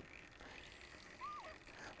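Near silence in a quiet shop, with one short, faint chirp a little over a second in.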